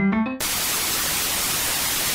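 Electronic music: a brief electric-piano chord, then about half a second in a loud, steady burst of white-noise static takes over, used as a transition between tracks.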